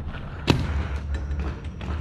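A single sharp pop of a paintball marker shot about half a second in, followed by a few much fainter ticks, over a steady low rumble.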